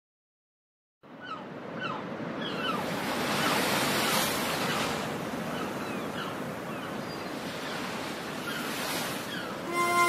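Ocean surf washing in and swelling twice, with short chirping bird calls over it, starting after about a second of silence: a recorded nature-sound intro before the music comes in.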